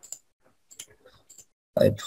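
A few faint, short computer mouse clicks, spaced unevenly, as slide thumbnails are selected in PowerPoint. A man says one word near the end.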